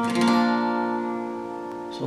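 Acoustic guitar capoed at the third fret, the closing G-shape chord of the intro picking pattern: a last string is picked at the start, then the chord rings and slowly fades.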